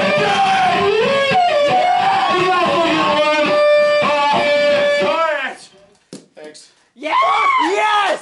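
Power electronics set: dense distorted electronic noise with sustained feedback tones and screamed vocals through the PA, cutting off suddenly a little over five seconds in. After a short near-quiet lull with a few clicks, loud voices come in near the end.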